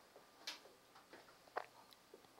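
Near silence in a small room, broken by a few brief faint clicks, the loudest about one and a half seconds in.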